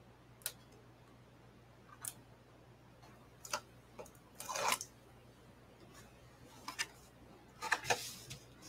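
Cardstock being handled and pressed together by hand: scattered light clicks and taps, with a short, louder rustle about four and a half seconds in and a quick run of clicks near the end.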